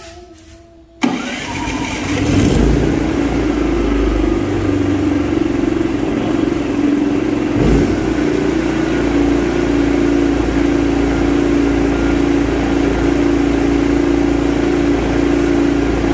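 Senci SC6000i inverter generator's petrol engine starting on its first start: it catches suddenly about a second in, picks up briefly, then settles into steady running.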